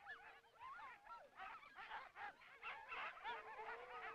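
A pack of sled huskies yelping and howling together: many overlapping short cries rising and falling in pitch, with a held howl at the start and another near the end.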